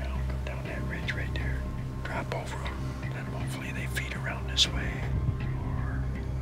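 A man whispering, over soft background music with a low steady drone.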